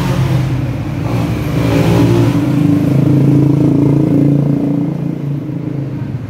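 Motorcycle and car engines running in busy street traffic, one revving so the engine note swells around the middle and eases near the end.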